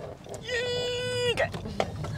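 A woman's voice holding one steady, flat note for about a second, a drawn-out hesitation sound, over the low steady road rumble of the moving car.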